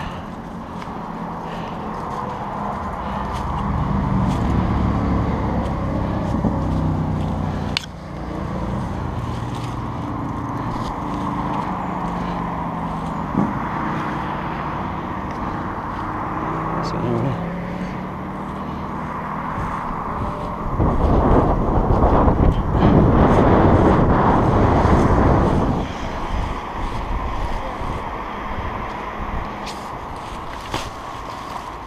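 Motor traffic running, with engine drones that slowly rise and fall. A louder low rush of noise lasts about five seconds in the second half.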